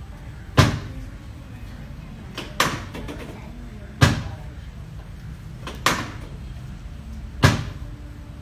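Five sharp thumps, about one every one and a half to two seconds, from a padded treatment table knocking as hands thrust down on a patient's lower back during manual spinal therapy.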